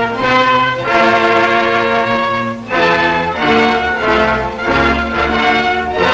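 Brass-led orchestral film score playing under the opening credits, with sustained chords that shift every second or so.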